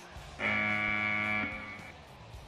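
A single sustained electric-guitar chord from the arena music, starting about half a second in and held for about a second before it fades away.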